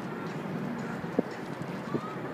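Faint voices of people over steady outdoor background noise, with two sharp clicks, one about a second in and one near the end.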